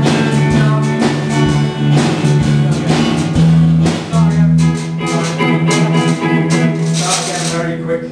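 Small live band playing a country-pop song: electric guitar over an upright bass line, with washboard percussion rattling along in rhythm.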